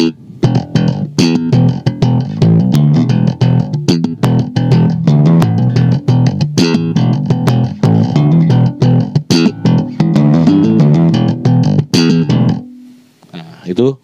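Five-string Squier Jazz electric bass played in a fast slap groove: a dense run of thumb-slapped and popped notes with sharp percussive clicks. It stops about twelve and a half seconds in on a short held note that dies away.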